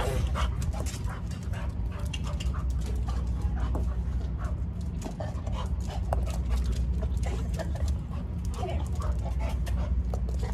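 A dog playing fetch with a tennis ball on a concrete floor: many quick, sharp clicks and taps of claws and ball through the whole stretch, over a steady low hum.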